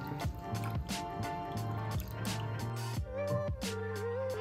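Background music, under which a thick soy-sauce marinade is poured onto raw chicken drumsticks in a glass bowl, with wet dripping and squishing sounds.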